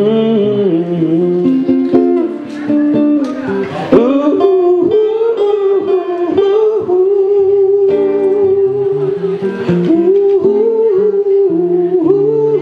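Acoustic guitar played under a long, wavering lead melody with no words, an instrumental passage of a solo folk song.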